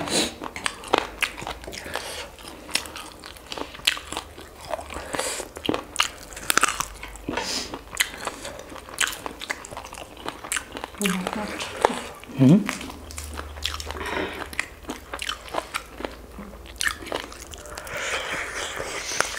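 Close-miked mouth sounds of eating fried chicken wings: crunchy bites and chewing as a dense, irregular run of clicks and crackles. About twelve seconds in there is a short voiced sound that rises in pitch.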